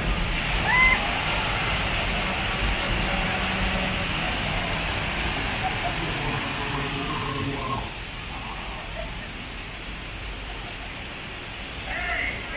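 Theme-park flash-flood effect: a torrent of water gushing down and splashing hard against the ride tram's windows. It eases off to a quieter spill about eight seconds in.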